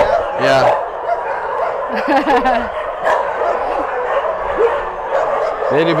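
A chorus of many kennelled dogs barking at once, a steady, unbroken din from a shelter holding hundreds of dogs.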